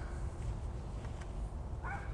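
A short animal call near the end, over a steady low outdoor rumble.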